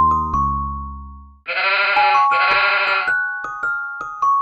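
Sheep bleating twice, two wavering baas of under a second each, set into a children's tune played on bell-like mallet instruments. The music's held note fades out before the bleats, and the plinking tune starts again just after them.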